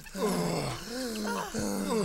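Cartoon characters' voices crying out: a run of cries, each falling in pitch, one after another.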